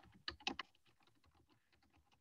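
Faint typing on a computer keyboard: a quick run of key clicks in the first half second, then scattered fainter taps.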